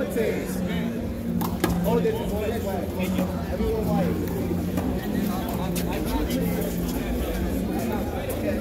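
Indistinct talk of several people over a steady low hum, with a few sharp knocks in the first seconds.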